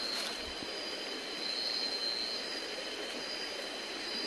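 A steady, high-pitched chorus of night insects, a continuous shrill drone, with a brief rustle near the start.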